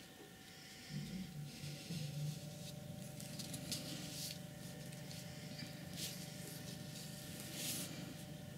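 Flat brush stroking and dabbing acrylic paint onto paper: several soft brushing strokes, the loudest near the end. A low steady hum starts about a second in.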